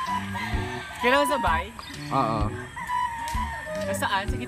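A rooster crowing once about a second in, over steady background music.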